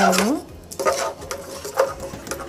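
Metal spoon stirring thick ragi (finger millet) porridge in an aluminium pot.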